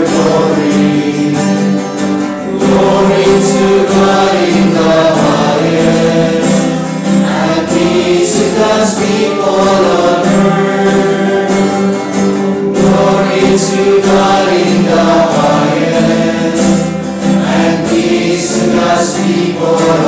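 A choir singing a church hymn, with sustained notes held throughout.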